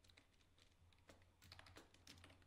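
Faint keystrokes on a computer keyboard: a few scattered taps, with a short run of quick keystrokes in the second half, over a faint low hum.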